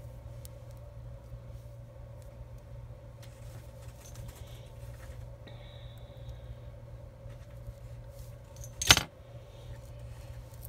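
Faint small metal clinks of jewelry pliers working a jump ring open. A single loud, sharp clack near the end as the pliers are set down on the metal ruler.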